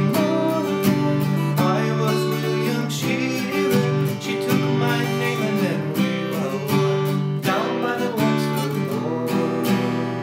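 Acoustic guitar strummed in a steady rhythm, moving through the chorus chords G, C, D and E minor.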